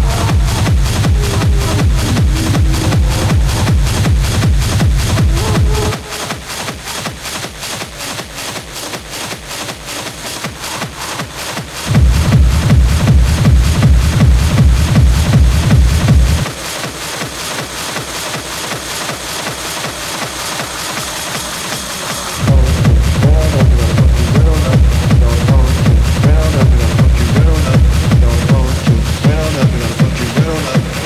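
Schranz hard techno from a DJ mix: a fast, pounding four-on-the-floor kick drum under dense, driving percussion loops. The kick drops out twice, about six seconds in and again about halfway through, leaving only the percussion for some five or six seconds each time, then comes back in at full weight.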